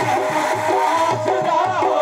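Qawwali music: steady held harmonium notes over a tabla rhythm, with a man's voice singing a wavering melody in the second half.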